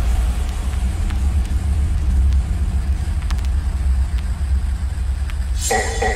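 Bass-heavy electronic music from a DJ mix, at a stripped-down moment: a continuous deep sub-bass rumble with a few sharp clicks, and a higher synth tone coming in near the end.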